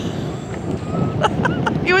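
Wind on the microphone over open water: a steady low rumble, with a few faint short clicks shortly before a word is spoken near the end.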